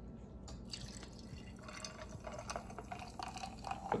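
Homemade carbonated apple cider poured from a bottle into a tall glass over ice, the stream splashing and fizzing as the glass fills; the pour starts about half a second in.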